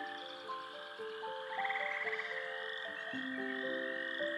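Soft background music, a slow melody of held notes, with a rapidly pulsing high trill of night-creature sounds laid over it that comes and goes a few times.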